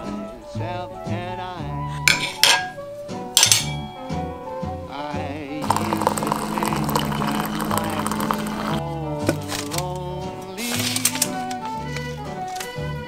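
Background music throughout, over which a refrigerator door water dispenser runs for about three seconds, a steady hum and hiss of water pouring into a glass mug. A few sharp clinks of glass and dishes come before it.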